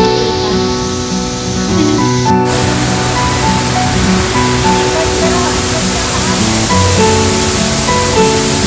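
Background music throughout. About two and a half seconds in, the steady rush of a waterfall suddenly joins it and carries on under the music.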